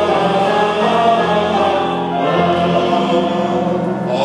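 A choir of several voices singing live, holding sustained notes and moving to a new chord about halfway through.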